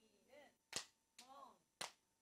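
Faint hand claps, three in about two seconds, as two people play a partner clapping game, with faint voices chanting between the claps.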